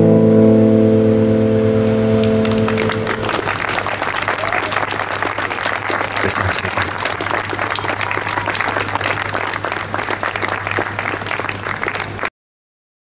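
The final chord of a song sung to acoustic guitar rings out for about three seconds. Then the audience applauds.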